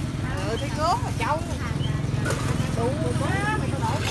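People talking over a steady low mechanical drone, with a brief sharp rustle a little past halfway.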